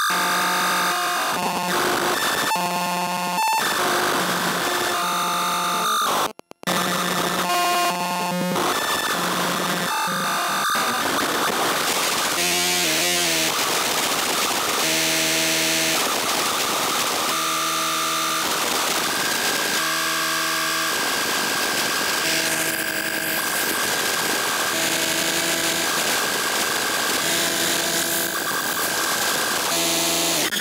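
Homemade mini Lunetta CMOS logic synth playing a harsh, glitchy noise patch: buzzing tones that chop and step in pitch, dropping out for an instant about six seconds in. A steady high whistle holds through the last third.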